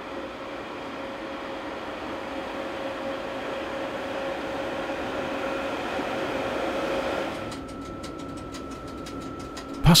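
SBB Ce 6/8 II 'Crocodile' electric locomotive moving off slowly, a steady hum over running noise that grows louder as it comes closer. About seven and a half seconds in, the sound changes to a quieter, higher steady whine with a rapid run of clicks.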